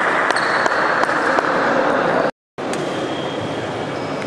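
Reverberant sports-hall ambience: a steady haze of spectator chatter with scattered sharp knocks from shuttlecock hits and footfalls on the wooden badminton court, and a few brief high shoe squeaks. The sound cuts out completely for a moment a little after two seconds in.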